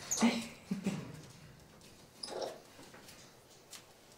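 White-faced capuchin monkey giving a few short, squeaky calls: two near the start and one about two seconds in.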